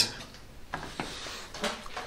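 Faint handling noise: a few light clicks and taps over a low hiss.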